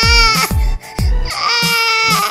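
A toddler crying in two long wails, the first ending about half a second in and the second starting past the middle. Background music with a steady low drum beat plays under it.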